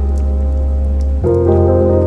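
Music score of sustained chords over a deep low note, moving to a new chord about a second in, mixed with the sound of steady rain falling.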